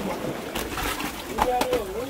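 Sea water washing and splashing around shoreline rocks, with a person's voice starting about one and a half seconds in.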